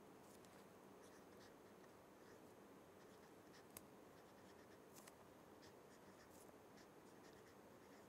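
Faint sound of a felt-tip marker writing on paper in short, irregular strokes, with one sharper tick a little before four seconds in.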